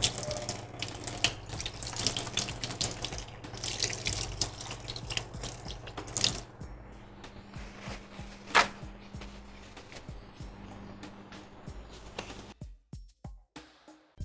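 Kitchen tap running into a stainless steel sink as hands are rinsed under it, shutting off about six seconds in. A single sharp click follows a couple of seconds later.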